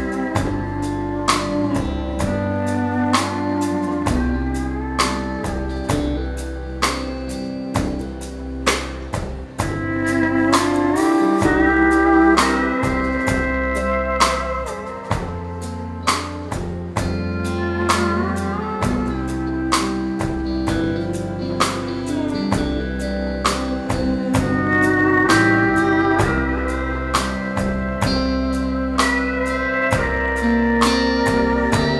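Pedal steel guitar playing a slow country melody, its notes sliding up and down between pitches, over a band's steady drum beat and bass.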